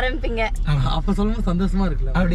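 Only speech: people talking inside a car's cabin, over a steady low hum.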